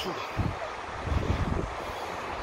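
Wind buffeting the phone's microphone in irregular low rumbles, over a steady rushing hiss of surf breaking on the beach.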